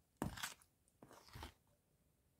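A metal spoon scooping a dry flour, cocoa and ground-nut mixture from a plastic tub: two short, soft scrapes.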